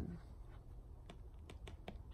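A handful of faint, sharp clicks at irregular moments over a steady low hum.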